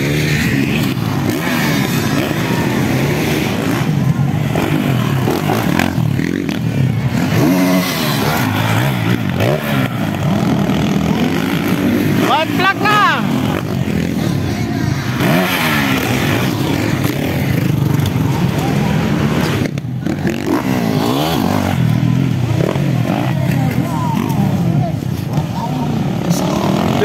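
Motocross dirt bike engines running around the track, their pitch rising and falling repeatedly as the riders work the throttle, with people's voices mixed in.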